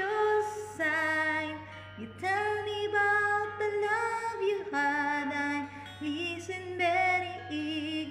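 A woman singing a slow song solo, holding long notes with a wavering vibrato.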